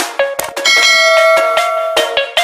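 A bright bell chime sound effect rings out about two-thirds of a second in and keeps ringing, after a couple of quick beats of intro music; it accompanies the subscribe-and-notification-bell animation.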